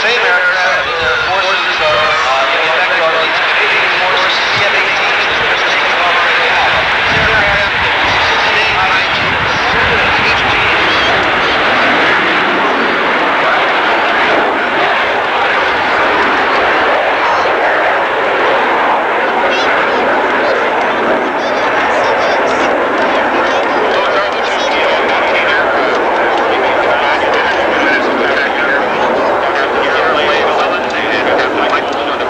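Two jet fighters taking off together, a loud, steady roar of jet engines that goes on as they climb away.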